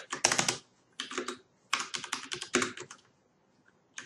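Typing on a computer keyboard: quick runs of key clicks in several short bursts.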